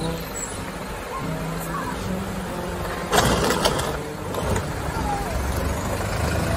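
Bus engine running with a low steady drone as the bus drives through a shallow river ford and climbs out onto the road. About three seconds in there is a loud, short hiss, and voices can be heard in the background.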